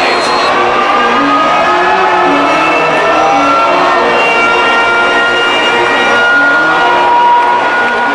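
Stadium crowd at a football game, a loud, steady roar of many voices shouting and cheering at once, with some long held cries over it.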